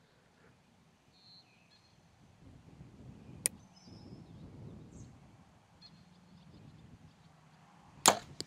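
Faint outdoor background while a compound bow is held at full draw, with a few faint high chirps and one sharp click about three and a half seconds in. At the very end the bow fires, a loud sudden release.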